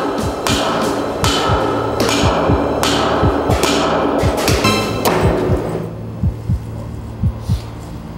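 Repeated echoing bangs of a baseball bat knocking against a corrugated metal culvert wall, about two to three a second, over low droning music. About five seconds in, the sharp bangs give way to softer low thumps.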